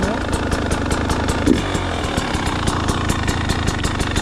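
Husqvarna TE 300 Pro two-stroke enduro engine idling steadily, with a fast regular pulse.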